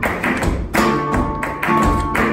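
Live flamenco: a Spanish guitar playing under rapid, sharp strikes from a dancer's heel-and-toe footwork (zapateado) on the stage and palmas hand-clapping.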